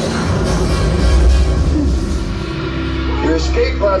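Ride soundtrack music over a deep rumble as the escape pod drops and lands. A voice comes in near the end.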